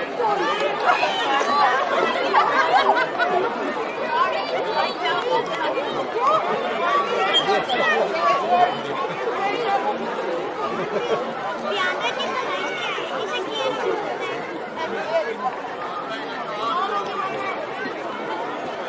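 Many voices chattering at once, overlapping so that no single speaker stands out: spectators on the touchline and young rugby players on the field.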